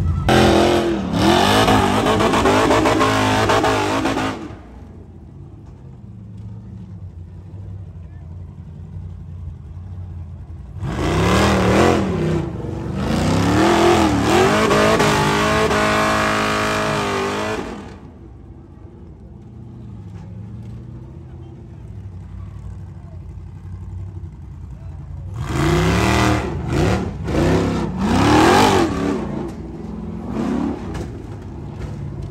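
Rock bouncer buggy's engine revving hard in three bursts of several seconds each as it climbs a steep rock ledge, the pitch rising and falling with the throttle, and running lower between the bursts.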